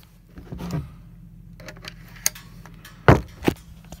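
A few sharp clicks and knocks from a lens and a DSLR camera body being handled and fitted together, the loudest two close together near the end, over a steady low hum.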